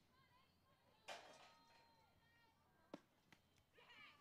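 Near silence of an outdoor ballfield, with faint distant voices and one sharp click about three seconds in.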